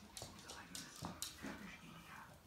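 A dog whimpering faintly, a few short whines.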